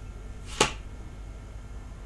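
A single sharp snap of a tarot card flicked against the deck in the hands, about half a second in, over a faint steady room hum.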